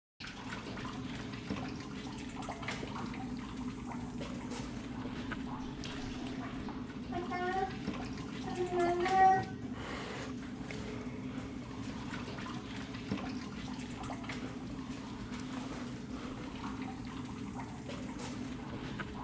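Playback of a noisy audio recording: a steady low hum and hiss, with a short wavering voice-like cry between about seven and nine and a half seconds in, the loudest moment.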